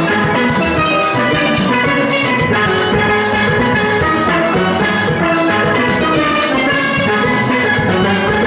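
A full steel pan orchestra playing live: many steel pans struck with sticks ring out together in a dense, fast-moving tune, loud and steady, with a regular beat underneath.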